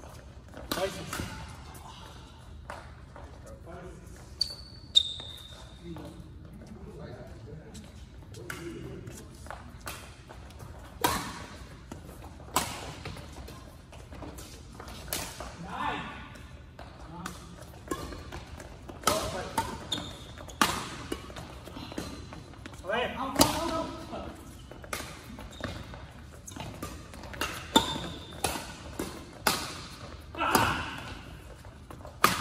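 Badminton rackets striking a shuttlecock with sharp cracks at irregular intervals during rallies, echoing in a large hall, with a short squeak about five seconds in and indistinct voices between shots.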